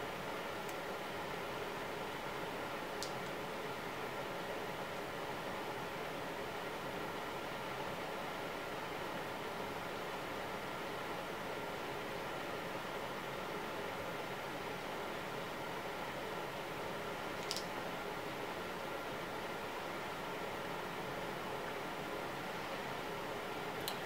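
Steady room noise: an even low hiss with a faint hum, broken only by a few tiny clicks.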